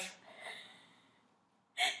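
A woman's breath: a faint exhale about half a second in, then near silence, then a short, sharp intake of breath near the end.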